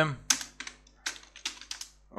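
Typing on a computer keyboard: short key clicks in two quick runs, one just after the start and another in the second half.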